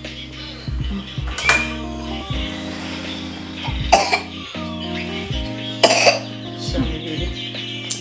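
A child coughing three times, short sharp coughs about a second and a half in, four seconds in and six seconds in, over background music with a steady bass line.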